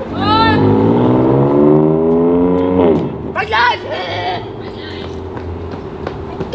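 BMW M4's twin-turbo straight-six accelerating away, its engine note climbing steadily for a couple of seconds and then cutting off suddenly about three seconds in. Short shouts or whoops of voices come at the start and just after the cut-off.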